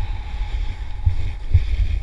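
Wind rumbling on the microphone of a body-mounted camera while snowboarding downhill, with a fainter hiss of the board sliding over snow. Stronger gusts come about a second in and again about a second and a half in.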